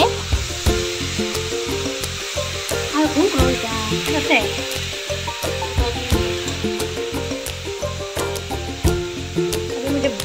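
Sliced vegetables sizzling as they fry in a black iron kadai, with stirring and scattered light clicks of utensil on pan.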